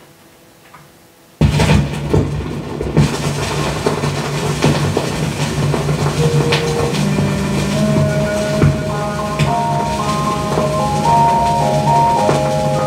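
Stylus set down on a 78 rpm shellac record about a second and a half in, followed by loud surface crackle and hiss from the groove. A few seconds later the dance-orchestra introduction starts to come through the noise, with pitched notes building toward the end.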